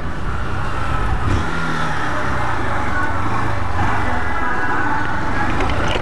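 Honda CG 160 Titan motorcycle's single-cylinder four-stroke engine running steadily while under way, mixed with steady wind and road noise on the camera microphone.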